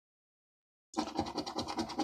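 A coin scratching the coating off a scratchcard: a rapid rasp of fine strokes that starts about a second in, after a dead-silent gap.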